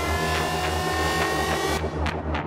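Electronic techno music: a steady kick-drum and bass pulse under hi-hat ticks and a held synth chord that glides slightly upward. Near the end the high end cuts out suddenly, leaving the bass and sharp hi-hat ticks.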